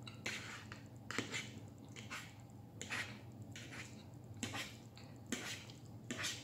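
Knife and fork clicking and scraping on a plate while cutting chicken, in short, irregular strokes about once a second.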